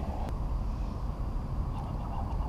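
Steady low rumble of wind buffeting an outdoor camera microphone, with a faint click shortly after the start.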